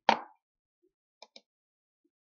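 A short pop at the very start, then two faint, quick computer mouse clicks about a second and a quarter in, as a menu is opened.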